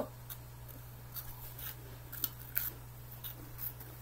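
Short, crisp crunches at uneven intervals as Cheezels, a crunchy cheese-flavoured corn snack, are bitten and chewed.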